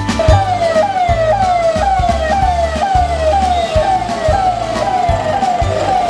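Electronic vehicle siren on a police escort, repeating a quick jump-and-fall wail about twice a second, over background music with a steady beat.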